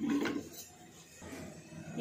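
Faint knocks and clinks of a stainless-steel pot being handled on the stove, then a fairly quiet kitchen.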